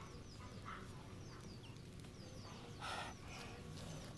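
Small birds chirping faintly in the background, many short high chirps, with one short louder noise about three seconds in.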